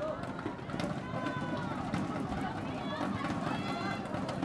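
Arena noise just after a badminton rally ends: crowd voices and chatter, with several short high squeaks that glide in pitch, typical of court shoes on the synthetic court floor.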